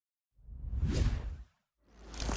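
A whoosh sound effect that swells and fades over about a second, followed by a second whoosh starting near the end.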